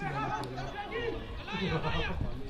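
Several people talking over one another, with one voice rising louder near the end: onlooker chatter at an outdoor football match.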